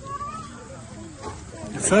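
Faint, overlapping talk from a crowd of men and boys, with a short higher-pitched voice in the first half-second; a man's voice starts loudly right at the end.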